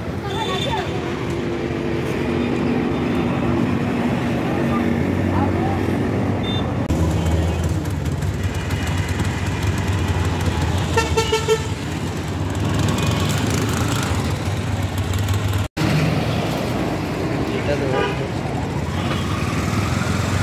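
Street traffic: a vehicle engine running steadily, with a short horn toot a little past the middle and voices in the background.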